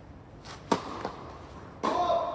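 Tennis serve: a sharp crack of the racket striking the ball, then a faint tap. About a second later comes a second loud knock with a short ring.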